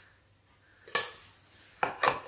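A small wooden plaque handled and set down: a sharp knock about a second in and another just before the end, with faint rubbing between them.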